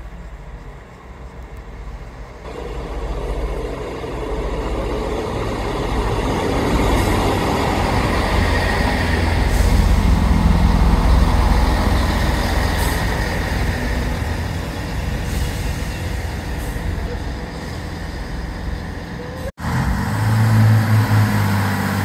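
Northern Class 158 diesel multiple unit running into the station: its diesel engines and wheels on the rails build to a loud roar midway, then settle into a low engine hum as it runs alongside the platform.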